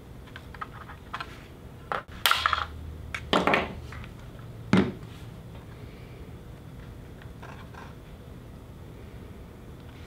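Small handling clicks and scrapes of a steel pushrod wire being worked with pliers against a foam-board wing. A few sharper clicks come about two seconds in, around three and a half seconds and near five seconds, then fainter fiddling.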